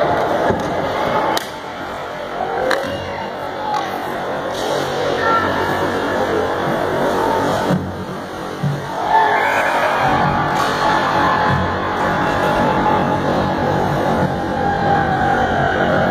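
Spectators in an ice rink shouting and cheering, many voices overlapping, with occasional clicks of sticks and puck. The cheering swells about nine seconds in as the goal is scored.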